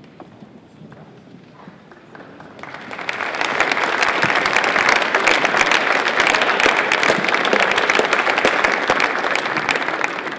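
Audience clapping, which swells in about three seconds in after a quiet start and then holds steady and loud.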